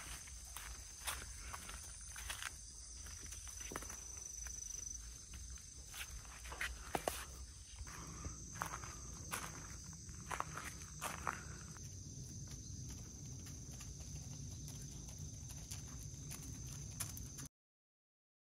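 Irregular light footsteps on fallen leaves and gravel, a scatter of sharp clicks over a low steady rumble. The sound cuts off just before the end.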